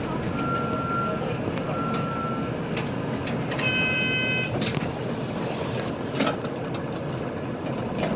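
City bus interior while driving: steady engine and road noise with occasional rattles. Two short high beeps in the first couple of seconds, and a brief chime-like electronic tone a little past the middle.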